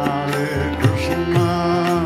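Kirtan music: a harmonium holds sustained chords while a tabla plays strokes through it.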